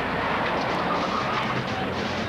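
Pickup truck engine running hard as the truck speeds off, with a steady, even roar of vehicle noise.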